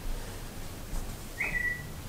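A phone's message alert: a single short high tone about one and a half seconds in, a quick blip that settles into one held note for about half a second.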